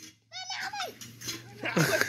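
Dog whimpering: a few short, high cries that bend up and down in pitch within the first second, with fainter sounds after.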